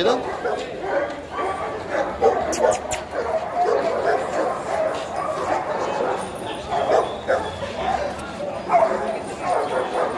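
Dogs barking and yipping over the chatter of a crowd.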